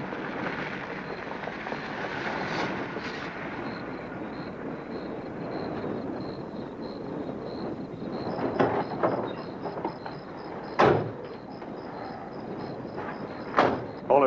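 A car running steadily, with a cluster of sharp knocks a little past the middle and two more single knocks near the end, the loudest about eleven seconds in.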